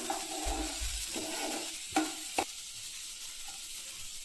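Finely chopped onion frying in butter in a nonstick pan on a medium flame, sizzling steadily. A wooden spatula scrapes through it during the first second, and there are two light knocks about two seconds in.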